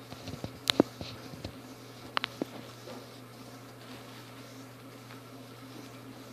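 Close handling noise while a wet cloth is rubbed over skin: a few sharp clicks and taps in the first two and a half seconds over a steady low hum.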